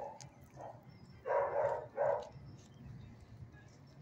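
A dog barks twice in quick succession a little over a second in, with a couple of fainter sounds just before.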